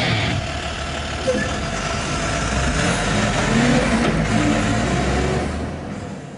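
A truck engine running and revving, beginning to fade out near the end.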